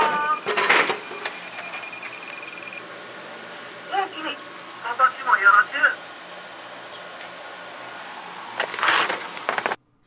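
Japanese talking drinks vending machine: a steady high electronic tone for the first few seconds with sharp clicks just under a second in, then the machine's recorded voice speaking short polite Japanese phrases about four to six seconds in, and a burst of noise near the end.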